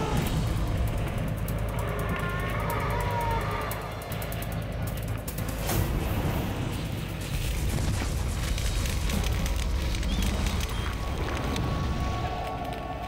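Flamethrower firing, a loud rush of burning flame that begins suddenly and keeps going, with a dramatic music score under it.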